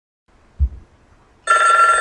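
A short low thump about half a second in, then a loud, steady ringing tone made of several held pitches that starts abruptly about a second and a half in.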